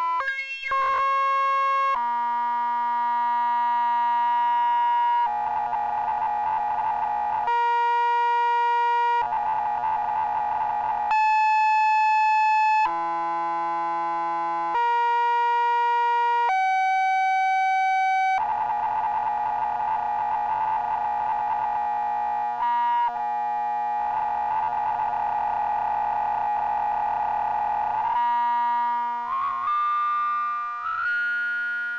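A DIY modular synthesizer playing through a Moog-style transistor ladder highpass filter, with a throaty, nasal character. It holds single notes that change pitch every second or two, with quick filter sweeps near the start and near the end, and several stretches turn rough and buzzy as the settings are changed.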